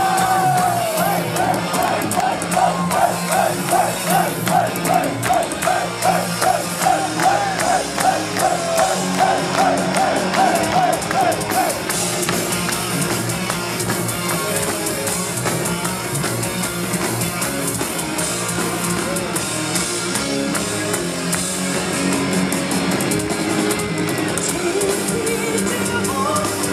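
Symphonic metal band playing live through a PA, heard from the audience: drums, guitars and keyboards. For about the first twelve seconds a high wavering line pulses a few times a second over the band, then the playing continues evenly.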